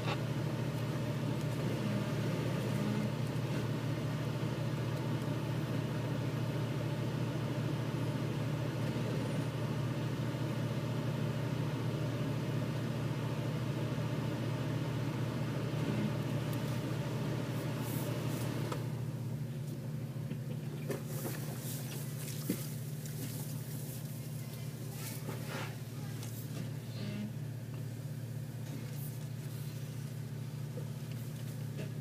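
Off-road vehicle engine idling steadily as a low hum. About two-thirds of the way through, the fuller part of the sound drops away and only the low hum remains, with a few sharp clicks and knocks near the end.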